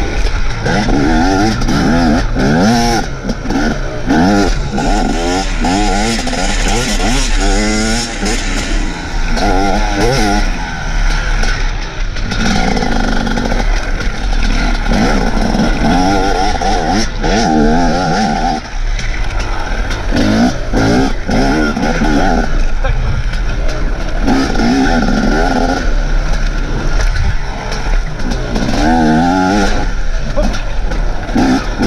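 Enduro dirt bike engine heard close up from on the bike, revving up and dropping back again and again as the rider accelerates and shifts at race pace over rough grass.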